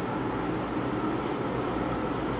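Whiteboard duster rubbing across the board in a steady scrubbing noise, wiping off marker writing.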